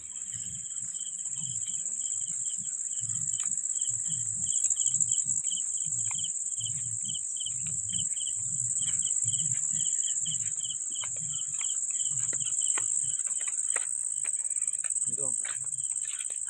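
Insects in dry scrub forest: a steady, high-pitched shrill drone, with a second, lower chirp repeating evenly about three times a second. Under it, soft low thuds about twice a second from footsteps on the leaf-littered ground.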